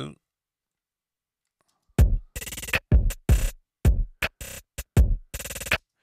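Programmed drum-machine beat playing back through a filter in a mixing plugin. It starts about two seconds in after a silence, with a heavy kick about once a second and longer, noisier hits between, and it stops just before the end.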